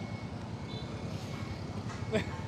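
A small engine idling steadily: a low rumble with a fast, even pulse.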